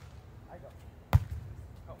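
A volleyball struck sharply by a player's arms or hand in a single loud smack about a second in.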